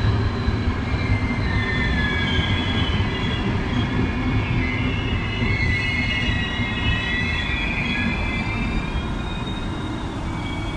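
Locomotive-hauled intercity train moving past the platform: a steady rumble of the coaches on the rails, with several high, wavering wheel squeals from about a second and a half in that fade out near the end.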